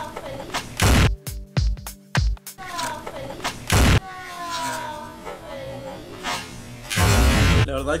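Three loud bangs: one about a second in, one near the four-second mark and a longer one near the end. Voices and music run between them.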